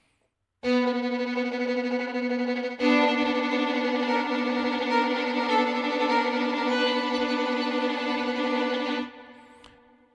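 Sampled solo violin playing tremolo from the VSCO 2 Community Edition library: a low note starts about half a second in, a second note joins it a couple of seconds later, and both are held until they fade away near the end.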